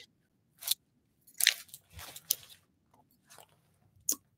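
A black nylon Prada handbag being handled and opened, making rustling, crinkling fabric noise in about five short bursts.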